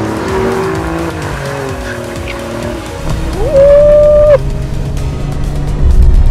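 Alfa Romeo Giulia Quadrifoglio's twin-turbo V6 revving up and down as the car slides on a wet track. A loud, steady tyre squeal starts about three and a half seconds in and cuts off sharply about a second later.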